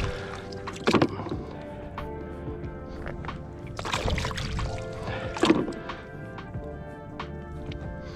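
Background music, with water splashing as a hand scoops shallow seawater: loud splashes about a second in, around four seconds and near five and a half seconds.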